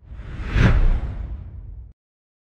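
Logo-intro whoosh sound effect over a deep rumble, swelling to a peak just over half a second in, then fading and cutting off abruptly just before the end.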